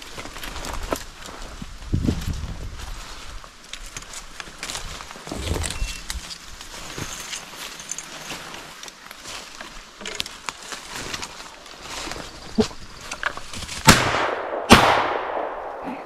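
Two shotgun shots less than a second apart near the end, each with a ringing tail, fired at a flushing bird. Before them, brush rustling and footsteps as the hunter pushes through thick saplings.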